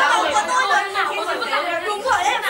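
Several young voices talking over one another in a jumble of chatter, loud and continuous, with the echo of a large hall.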